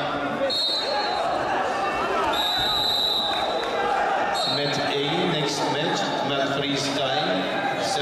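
Referee's whistle blowing two steady high blasts, a short one about half a second in and a longer one of about a second and a half near the middle, over a constant babble of voices in a large sports hall.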